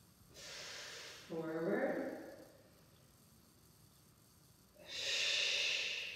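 A woman's breathing during a dumbbell exercise: a breathy exhale early on, a short voiced sound about a second and a half in, then a stronger hissing exhale near the end.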